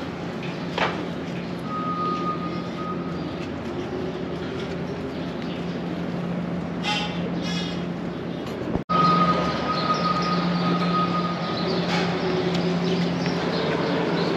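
A steady low mechanical hum with a thin, steady high whine that comes in twice, for about a second and a half and then about three seconds. A couple of short pitched sounds come near the middle, and the sound cuts out for an instant about nine seconds in.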